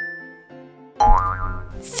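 Light children's background music with a chime note fading out at the start. About a second in comes a cartoon boing sound effect: a low thud under a springy rising tone.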